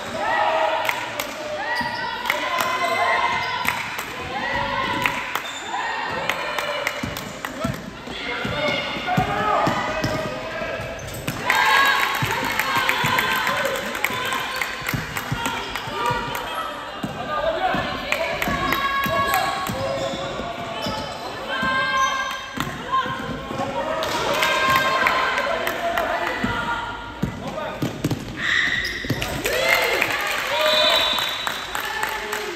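Basketball being dribbled and bouncing on a sports-hall floor during play, with voices calling and talking almost throughout, echoing in the large hall.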